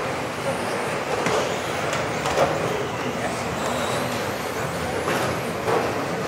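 Small radio-controlled racing cars running laps on a hall floor: faint high motor whines that rise and fall in pitch over a steady hiss, with a few short knocks. Voices in the hall murmur underneath.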